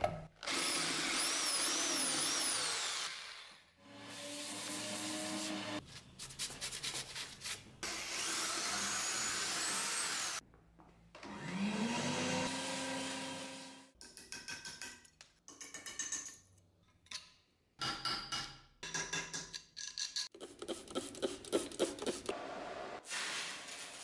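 A run of short workshop clips: an electric drill boring into an old vise's body, then a vacuum cleaner motor spinning up with a rising hum and running steadily, then a string of short, irregular bursts near the end.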